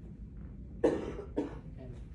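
A person coughing twice, the first cough louder and the second shorter.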